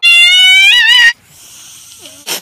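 A cat's loud, high-pitched screech lasting about a second, its pitch wavering just before it cuts off.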